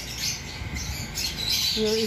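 Aviary birds giving high-pitched chirps and squawks, with a clearer call near the end.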